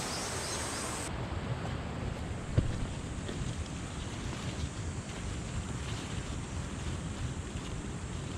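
Steady wind noise on the microphone, with one short, sharp click about two and a half seconds in.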